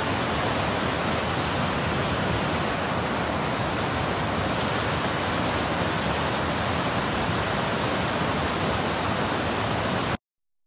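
Large waterfall pouring down a tall stepped rock face, a steady, even rush of falling water that does not change.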